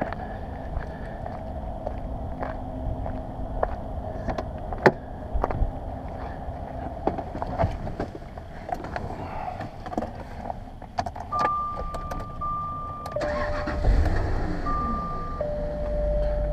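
Clicks and knocks of someone getting into a 2000 Jaguar XJ8, with keys handled. Then the car's electronic warning chimes sound in two alternating pitches. About fourteen seconds in, the V8 cranks and catches at once, starting without trouble, and settles into a steady idle.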